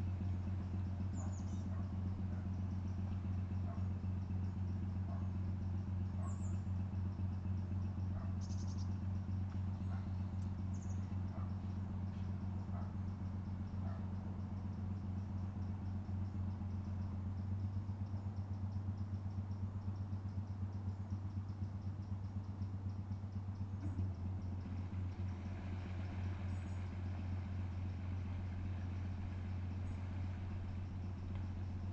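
A canal barge's diesel engine running steadily at low revs while the boat manoeuvres, a deep, even hum.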